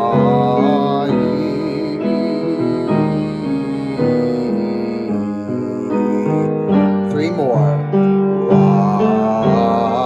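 A man sings a wordless vocal warm-up exercise over keyboard chords that change about once a second, his voice wavering in pitch. About seven seconds in, he sweeps up and down in a long slide.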